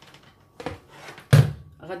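An electric hand mixer set down on a stone worktop: one sharp knock about a second and a half in, with a fainter knock before it.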